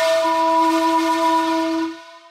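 A single loud held note with a horn-like tone and many overtones, used as a sound effect. It starts abruptly, holds steady, and fades away near the end.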